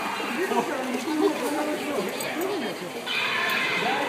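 Animatronic Deinonychus playing its recorded growling calls through its speaker: a run of short, wavering pitched calls, with a hiss joining about three seconds in.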